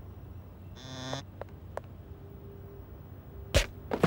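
Cartoon sound effects of a blow landing: a short pitched squeak about a second in, a few faint clicks, then two loud sudden thumps near the end.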